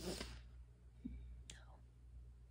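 A man's breath out, soft and breathy, in a pause between sentences. A faint click follows about a second and a half later, over a low steady room hum.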